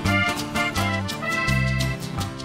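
Live band playing Andean huayño dance music: electric bass notes under a held, sustained high melody line.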